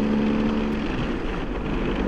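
BMW R 1250 GS motorcycle's boxer-twin engine running steadily while riding uphill. The engine note wavers briefly about halfway through.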